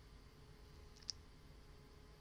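Near silence: room tone with a faint steady hum, broken about a second in by a single short, sharp click.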